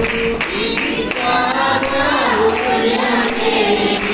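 Telugu Christian praise song: singing over instrumental backing with regular percussion hits.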